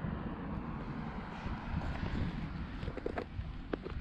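Wind on the microphone, a steady low rumble, with a few faint knocks near the end.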